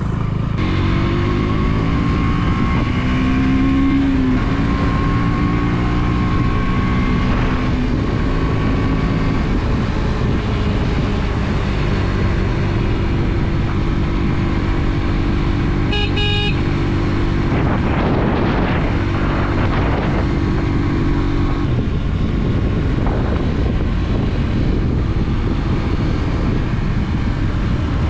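Motorcycle engine running under way, its pitch shifting up and down with the throttle, over steady wind and road noise. A short horn toot sounds about sixteen seconds in.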